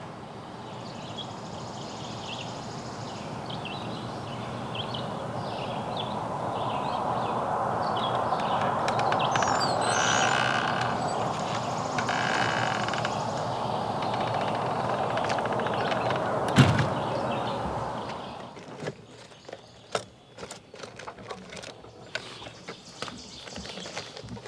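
A steady rushing noise swells for about ten seconds and slowly eases off, with small bird chirps over it and a single sharp knock a second or so before it ends. The noise stops abruptly a few seconds before the end, leaving faint scattered clicks and rustling.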